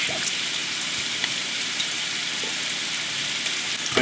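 Eggs frying in butter and diced bacon rendering in hot pans, a steady sizzle with no break. A few faint clicks from the plastic spatula as the eggs are flipped.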